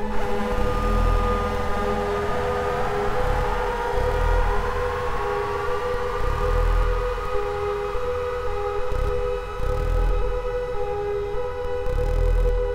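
Soma Lyra-8 organismic synthesizer played on its touch plates: steady, layered drone tones with one voice gliding upward in pitch a few seconds in, over a slow low pulse about every two seconds.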